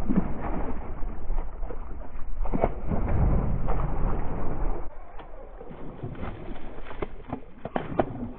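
Water splashing as a hooked largemouth bass thrashes at the surface beside a kayak, in a series of sharp slaps, over a steady low rumble of wind on the microphone.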